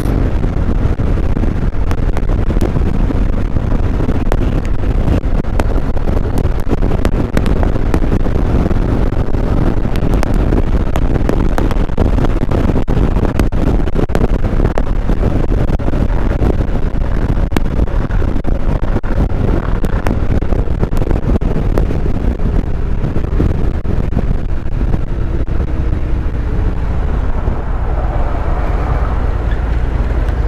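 Steady wind rush on the microphone over the 2017 Harley-Davidson Road Glide Special's Milwaukee-Eight V-twin running at freeway speed. The noise is loud and unbroken, heaviest in the low end.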